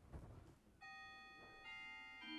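Organ begins playing softly about a second in: a held chord of steady notes, with another note joining shortly after. This is the start of the postlude after the benediction. Before it comes a faint handling sound.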